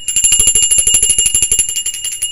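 A metal bell rung in a fast, even roll of strokes, about twenty a second, with a bright steady ring. It serves as a drum-roll cue.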